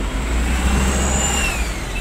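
Road-vehicle noise with heavy wind rumble on the microphone, and a thin whine that rises, peaks about a second in, then falls away.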